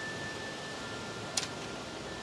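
Wind chimes ringing faintly with long, steady tones; a second, lower tone joins just under halfway in. A brief click comes about a second and a half in.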